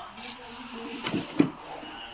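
Two short thuds about a third of a second apart, the second louder, as a large freshly caught fish is handled and set down.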